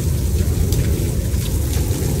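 Rain and hail falling on wet concrete in a storm: a steady wash of rain with scattered sharp ticks of hailstones striking. Underneath runs a heavy low rumble of wind buffeting the microphone.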